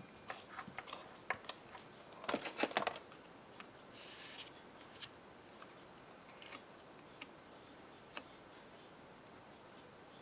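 Tape runner and cardstock being handled: scattered light clicks of paper, then a quick rattling run of clicks a little over two seconds in, the loudest part, as adhesive is laid on the panel. A brief soft hiss about four seconds in, then a few isolated taps as the layered panel is set down.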